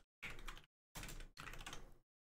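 Typing on a computer keyboard: three short, faint bursts of keystrokes, each cutting off abruptly.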